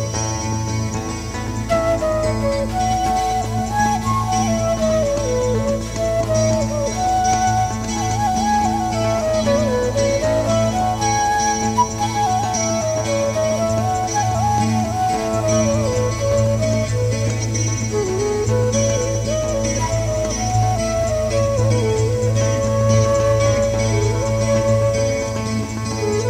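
Live music: a side-blown wooden flute plays a slow, winding melody with sliding ornaments over a steady low drone, with acoustic guitar accompaniment.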